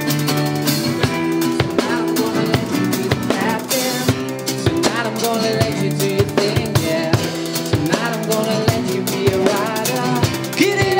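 Live acoustic band playing: a strummed acoustic guitar over a drum kit, with a man singing.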